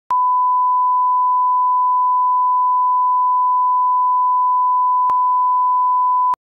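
A 1 kHz line-up test tone, a single steady pure beep that plays with the colour bars. It starts with a click, and there is a faint click about five seconds in.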